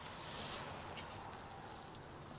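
Faint, steady background noise with a low hum underneath: the quiet ambience of the soundtrack, with no distinct event.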